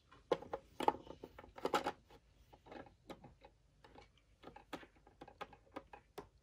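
Small plastic toy figure clicking and tapping against a plastic toy ship and its ladder as it is moved by hand: a run of irregular light clicks and knocks, loudest in the first two seconds.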